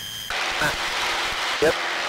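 Steady cabin noise of a light single-engine trainer airplane's engine and propeller at full takeoff power, just after liftoff. The noise drops out briefly right at the start, then runs on evenly.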